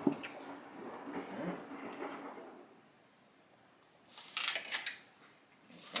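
Small paper coffee cup being handled and its plastic lid worked off: a short crinkly scraping burst about four seconds in, after a near-silent pause, and a brief rustle at the very end.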